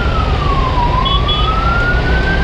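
Ambulance siren in a slow wail, falling in pitch through the first second and then rising again, over a steady low rumble of traffic and wind.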